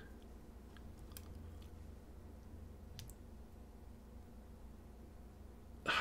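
Quiet room tone with a low steady hum and a few faint clicks, the clearest about three seconds in, from a white plastic magnifier loupe being handled close to the microphone.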